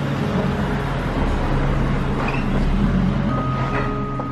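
A car driving slowly past at close range on a narrow street, its engine and tyres rumbling low and growing louder as it passes about three seconds in.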